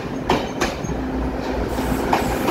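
Three-car DRC diesel railcar set rolling past close by. Its wheels clack over rail joints a couple of times over the low rumble and steady hum of the train.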